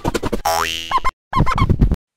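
Cartoon 'boing' sound effects: a springy rising glide over rapid clicking, a brief drop to silence just after a second in, then another short burst.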